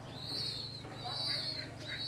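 Young pigeons peeping: thin, high-pitched calls, about three in a row, each rising and falling over about half a second, over a low steady hum.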